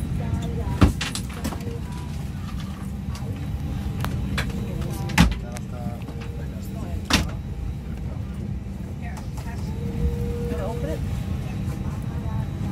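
Airliner cabin noise, a steady low rumble, broken by three sharp knocks from the seat area about one, five and seven seconds in, with faint voices in the background.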